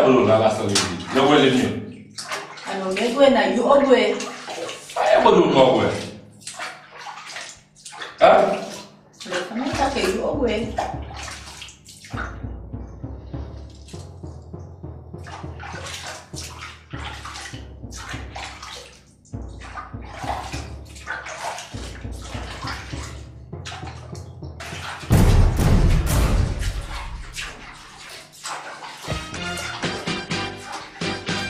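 Water sloshing in a filled bathtub as a person moves in the bath, under dialogue and then low background music. About 25 seconds in, a loud rushing burst that lasts around two seconds.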